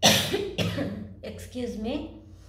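A woman coughing into her fist: a loud cough right at the start and a second about half a second later.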